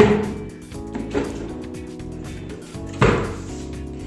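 Wooden vanity drawers and a cabinet door being opened and shut, with a sharp knock at the start, a smaller one about a second in, and another loud one near the end, over background music.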